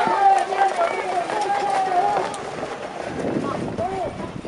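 Harness-racing trotters and their sulkies passing close on a dirt track, with hoofbeats and wheels on the dirt coming through in a quick patter over the second half. For the first two seconds or so a voice shouts over them in long, drawn-out calls.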